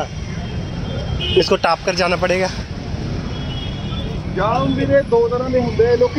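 Congested street traffic: a dense low rumble of motor vehicle engines from a traffic jam, with people talking close by.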